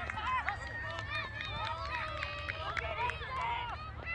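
Children's voices shouting and calling out during a youth soccer game, many short overlapping high calls, over a steady low rumble.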